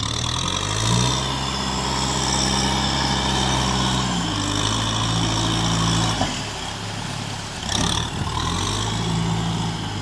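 Kubota M6040SU tractor's four-cylinder diesel engine working under load as it pushes a blade of mud through a flooded field. Its pitch rises about a second in, falls back around four seconds, dips near six seconds and picks up again near the end, following the load on the blade.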